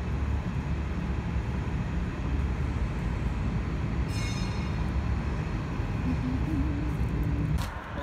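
Steady low rumble of a subway train running through the station, with a brief high squeal about halfway through.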